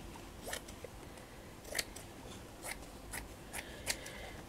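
Scissors snipping through stiff crinoline fabric: about six short, sharp cuts, spaced unevenly and fairly faint.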